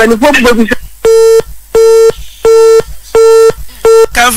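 Telephone busy tone on a phone-in line: one steady pitch beeping in short, even pulses, five of them about three every two seconds, after a moment of speech.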